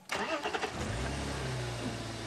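Open safari vehicle's engine starting: it comes on suddenly and settles into a steady idle about a second in.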